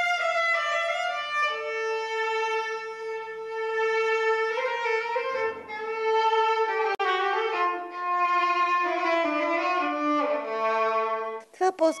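Solo violin playing a slow melody of long held notes, moving to a new pitch every second or two.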